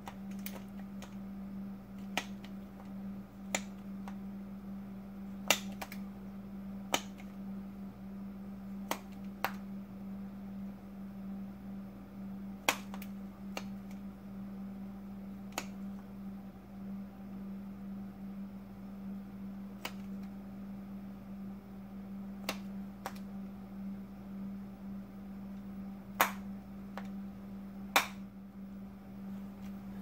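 Hand tools clicking and tapping during engine work, about fourteen sharp isolated clicks at irregular intervals, over a steady low hum.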